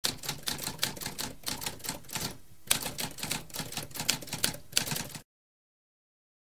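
Typewriter keys clacking in a quick, uneven run of strokes, with a brief pause about halfway. The typing stops a little over five seconds in.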